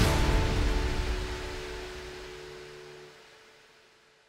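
Background music fading out steadily, its held notes dying away to near silence by the end.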